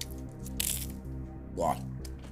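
A single short crunch of a crisp chip being bitten into, about half a second in, over steady background music.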